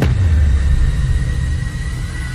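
A loud, deep rumble that starts suddenly and holds steady, with a faint thin high tone running above it.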